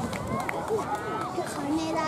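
Several voices shouting and calling at once across an open sports field, with one long held call near the end.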